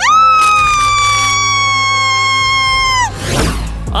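A woman's long, loud scream that starts suddenly, sags slowly in pitch and breaks off about three seconds in, over background music. A short whoosh follows near the end.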